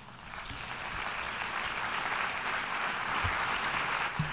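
Audience applause in a large hall, building up over the first second and then holding steady.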